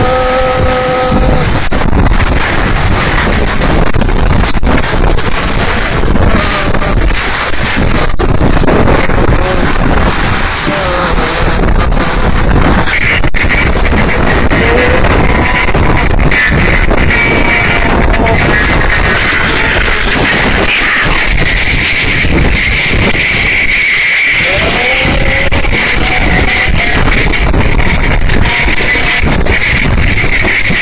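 Violent whirlwind wind blasting against a phone microphone: a loud, dense rushing noise with irregular knocks and clatters of flying debris. A steady high-pitched whine joins about two-thirds of the way in.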